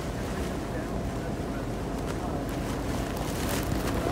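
Storm wind buffeting the microphone in a steady rushing noise, with a few sharp taps near the end.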